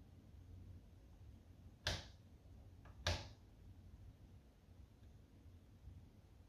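Quiet room tone with a faint low hum, broken by two short sharp sounds about a second apart, the first about two seconds in.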